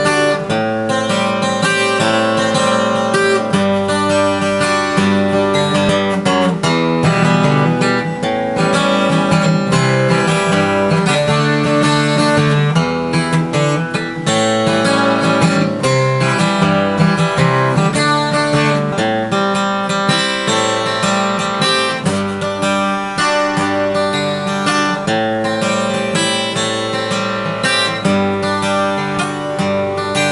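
Twelve-string acoustic guitar played continuously, a steady run of ringing chords with no break.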